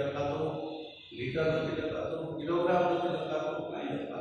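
A man speaking in Gujarati in long, drawn-out phrases, with a brief pause about a second in.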